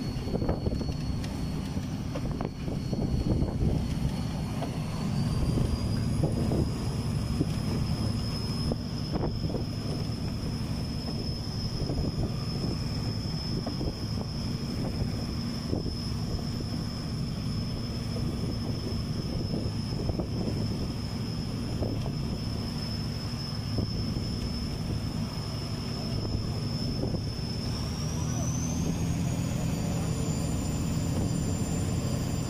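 Fishing boat's engine running steadily on a low drone, with a thin high whine above it that steps up in pitch about five seconds in and again near the end.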